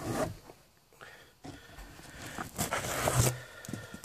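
Handling noise from a handheld camera being moved and repositioned: rustling and scraping, with a short burst at the start and a longer stretch that builds up and is loudest from about two and a half to three and a half seconds in.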